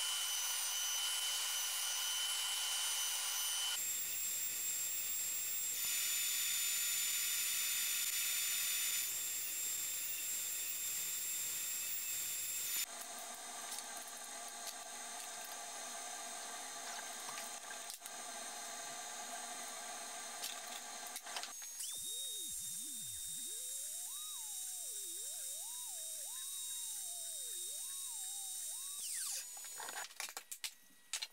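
Electric wood router running and cutting hardwood, a steady high-pitched whine that changes character several times as one cut gives way to another. In the last several seconds a steady high whine is joined by a lower tone that wanders up and down.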